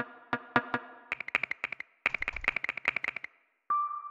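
Electronic percussion samples from a Battery 4 drum sampler kit. A few separate pitched hits come first, then a fast run of short, clicky hits about eight a second for two seconds, and a steady electronic note starts near the end.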